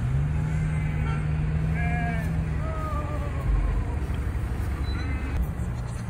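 Vehicle engines idling in a stopped line of traffic: a low steady rumble, with a steady low hum that fades out about two and a half seconds in.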